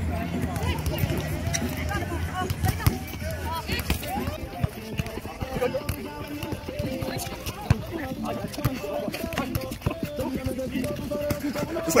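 Indistinct chatter and calls of players and onlookers at soccer tennis, with a few sharp thumps of a soccer ball being kicked.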